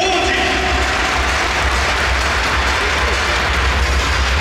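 Large stadium crowd applauding, an even wash of clapping after a player's name is announced over the public-address system, with a steady low rumble underneath.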